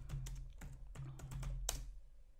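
Typing on a computer keyboard: a quick, irregular run of keystrokes, with one louder strike near the end.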